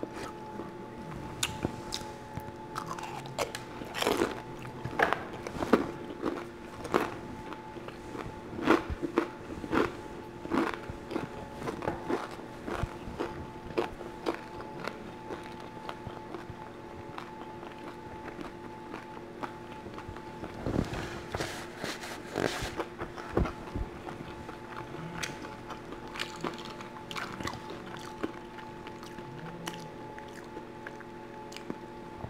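A person chewing dim sum close to the microphone: irregular wet mouth clicks and smacks, thickest in the first dozen seconds and again around twenty seconds in.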